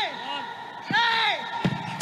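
Men shouting "yeah" in a near-empty stadium, high, strained calls in quick succession, with a single dull thud about one and a half seconds in as the penalty kick strikes the football.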